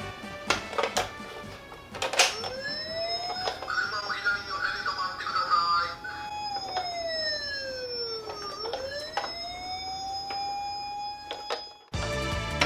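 Electronic siren of a toy police car, a slow wail that rises, holds, sinks and rises again to a steady note, with a few sharp clicks of handling near the start.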